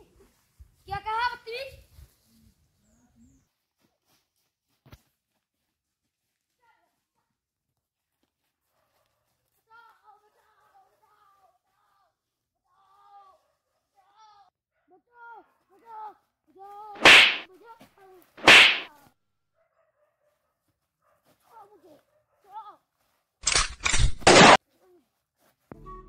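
Two loud, sharp noise bursts about a second and a half apart, then a quick run of four more near the end, with faint short calls in the quiet stretches between.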